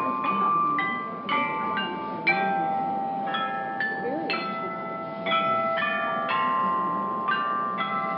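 Recording of a set of Chinese bronze chime bells struck one after another in a melody, each note ringing on and overlapping the next, heard through a tablet's speaker.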